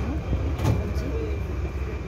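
Diesel bus engine idling: a low, steady rumble, with a short burst of noise about a third of the way through.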